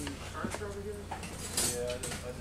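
Faint voices of people talking in the background, with no clear words, over a low steady rumble; a single light knock about half a second in.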